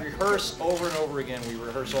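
A man speaking: only speech.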